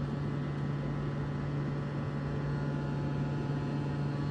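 A steady low hum, one unchanging tone with a faint hiss above it.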